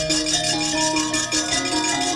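Javanese gamelan playing: bronze metallophones ringing out a stepwise melody over low gong-like tones, with a fast, steady metallic rattle from the dalang's keprak plates.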